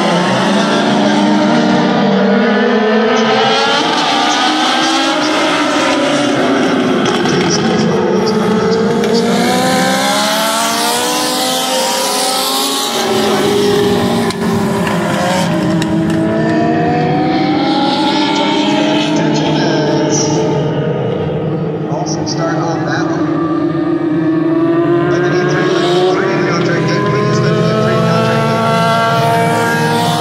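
A pack of Legends race cars running together, their Yamaha four-cylinder motorcycle engines revving high. Several engines overlap, each rising and falling in pitch as the drivers accelerate and lift.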